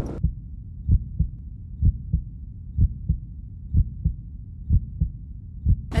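A low, muffled thudding beat in a heartbeat pattern: paired thumps, a strong one followed by a weaker one, repeating just under once a second.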